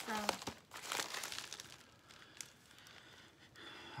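Plastic bubble mailer crinkling as it is slit open with a knife and handled. The crinkling is densest in the first second or so, then thins to faint rustles.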